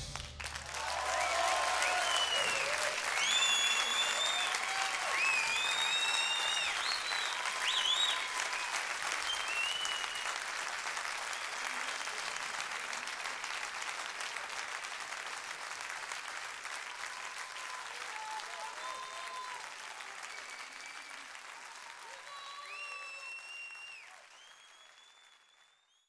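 Audience applauding, cheering and whistling as the band's song ends; the applause fades out near the end.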